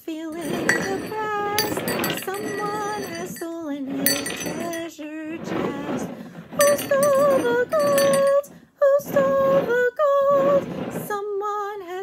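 A woman sings a simple children's song unaccompanied while large ceramic coffee mugs are slid and knocked about on a tabletop, making repeated clinks and scrapes. The object hidden under one mug jingles as it moves.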